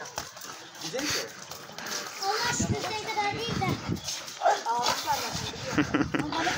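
Young people's voices talking, with sounds from a pit bull as it plays with and grips a ball.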